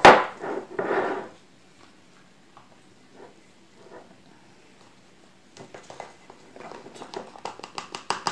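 Olives and a plastic tub being handled over a glass jar packed with peppers: a sharp knock at the start, faint taps in the middle, then a run of light clicks and rustling in the last couple of seconds.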